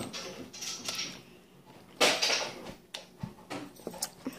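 Plastic candy wrapper crinkling as it is handled, in a few short bursts, the loudest about two seconds in, with a few small clicks after.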